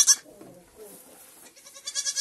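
Goats bleating: a wavering bleat cuts off just after the start, a short lull follows, then another quavering bleat begins near the end.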